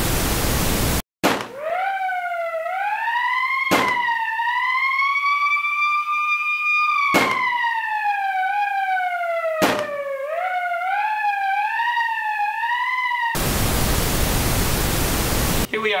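TV static hiss about a second long, then a single high, slowly gliding tone that wavers up and down, broken by three sharp clicks, then static hiss again near the end.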